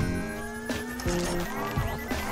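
Background music with a quick, steady beat.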